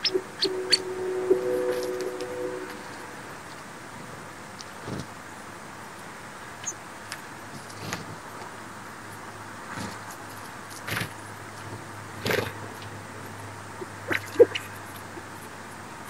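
Outdoor backyard ambience: a horn sounding a steady two-note chord for about two and a half seconds at the start, then short, sharp high chip notes and small clicks scattered through the rest, from sparrows feeding at a seed stump, over a faint low hum in the second half.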